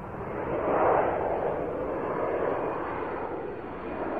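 A whoosh transition sound effect: a rushing noise that swells to its loudest about a second in, then slowly fades.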